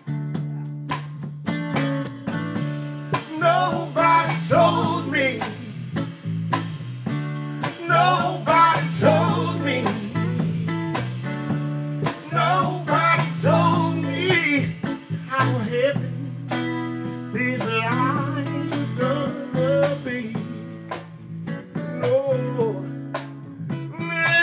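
Live band performance: a man singing lead into a handheld microphone over a strummed acoustic guitar and an electric bass, with a steady beat from the strumming.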